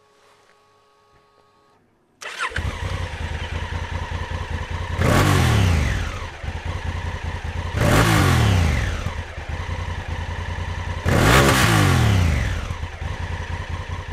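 Honda CRF1000L Africa Twin's 998 cc parallel-twin engine starting about two seconds in, settling to idle, then revved three times about three seconds apart, each blip rising and falling back to idle.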